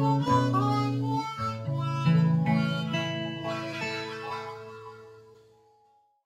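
Harmonica and acoustic guitar playing the closing bars of a song together, with held harmonica notes over a few strummed chords, fading away over the last few seconds.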